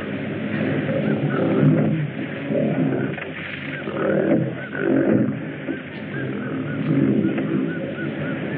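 A large wild animal roaring in several long swells of about a second each, with small high bird chirps repeating over it. It sounds like an old jungle-film soundtrack, dull and lacking all high frequencies.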